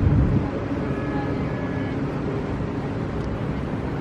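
Steady low outdoor rumble with no speech, a little stronger at the very start, with a faint thin whine about a second in lasting around a second.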